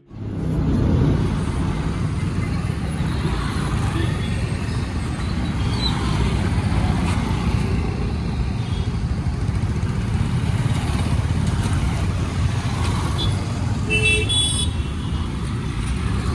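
Road traffic: cars and motorbikes passing on a busy street, a steady loud rumble. A vehicle horn honks briefly near the end.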